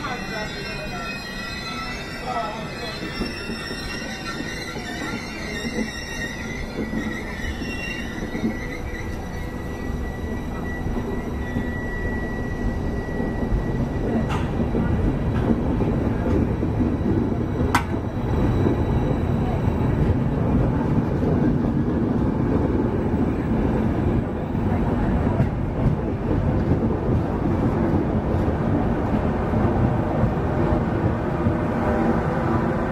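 Trenitalia Intercity passenger train rolling along the platform: high-pitched wheel squeal in the first seconds fades away, and the rumble of the coaches' wheels on the rails grows steadily louder, with two sharp clicks in the middle.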